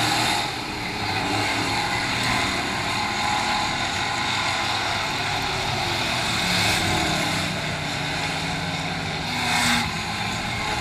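Dirt-track race cars running at speed around the oval, their engines making a steady drone that swells as cars come through the turn, loudest just before the end.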